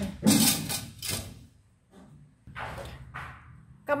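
A metal bowl of marinated chicken being set down into a stainless steel steamer basket inside a pot: a loud scraping clatter of metal on metal in the first second, then softer scrapes about two and a half seconds in as it settles.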